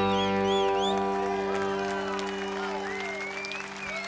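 A country band's last held chord rings out and fades, with fiddle slides over it in the first second, as the crowd applauds.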